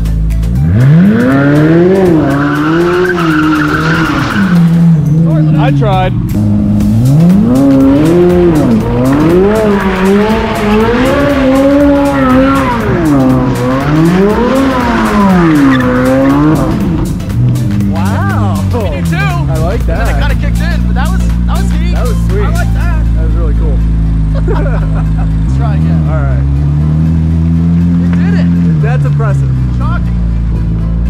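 Chevrolet C8 Corvette Z06's 5.5-litre flat-plane-crank V8 revving up and down over and over while the rear tyres spin and squeal in donuts. About twenty seconds in it settles to a steady idle, with one short rise in revs near the end.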